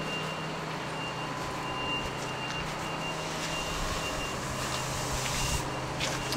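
A vehicle's reversing alarm beeping steadily, about two beeps a second, over the steady running noise of its engine. The beeping starts about a second and a half in.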